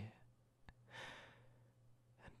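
A man's soft breath close to the microphone, a quiet sigh-like rush of air about a second in, after a small mouth click, over a faint low hum.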